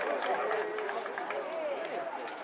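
Several voices shouting and calling out at once, overlapping, with scattered short clicks.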